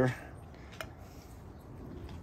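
Low background noise with one faint, short click a little under a second in, after a man's voice trails off at the very start.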